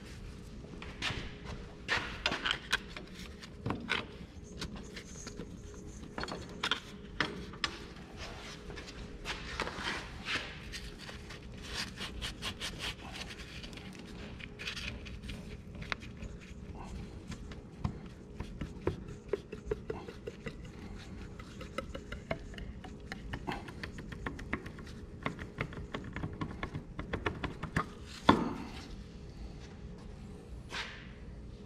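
Hand ratchet clicking in quick runs while the bolts of an Oliver 1550 tractor's steering box top cover are loosened, among scattered metal clinks and scrapes of tools and parts. One sharp clank near the end is the loudest sound, over a faint steady hum.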